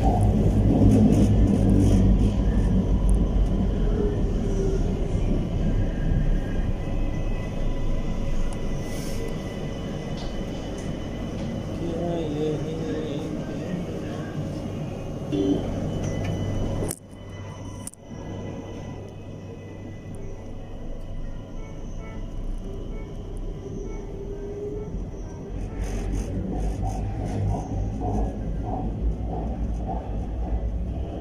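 MRT Kajang Line metro train running on its track, heard from inside as a steady low rumble that is loudest at the start and gradually eases. About 17 seconds in the sound cuts out abruptly for a moment, then comes back quieter.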